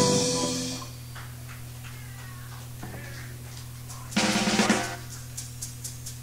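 A live rock band's final chord rings out and fades over about a second, leaving a steady amplifier hum. About four seconds in comes a short burst of sound lasting under a second, then a few faint ticks.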